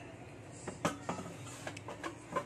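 A few light, sharp clicks and knocks from a plastic air fryer basket as it is handled and lined up to slide into the air fryer.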